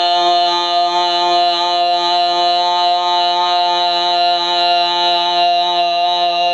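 A man's chanting voice holding one long, steady note with a slight waver, as a drawn-out opening of a Shia majlis recitation.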